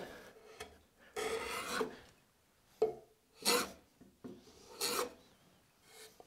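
Small block plane cutting a chamfer across the end grain of a wooden board: about four short scraping strokes with pauses between them, the first and longest about a second in.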